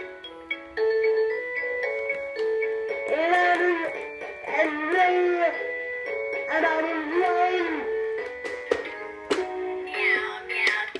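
A B.Toys Meowsic cat keyboard playing a simple electronic melody, one plain tone after another. From about three seconds in, meow-like sung notes that rise and fall come in over the tune, several times.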